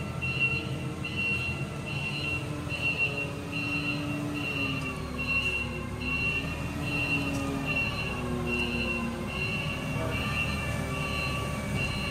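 Forklift warning beeper sounding a high beep a little more than once a second, over the forklift's engine running with a wavering hum as it moves with a load.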